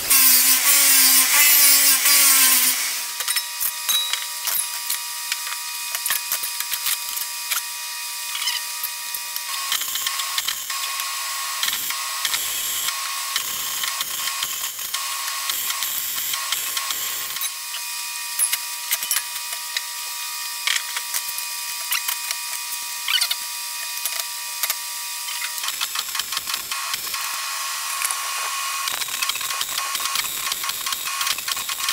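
An angle grinder whines against steel for about the first three seconds. Then a MIG welder crackles and sizzles as it lays weld on a steel frame, with a steady hum that comes and goes between stretches of welding.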